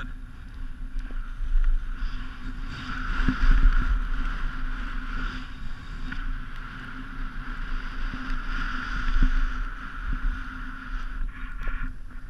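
Wind rushing over an action camera's microphone while skiing downhill, with the hiss of skis sliding on groomed snow. The rush swells and eases several times.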